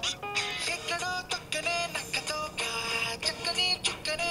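A film song playing from a mobile phone's speaker: a singer holds long notes and moves between pitches over a backing track.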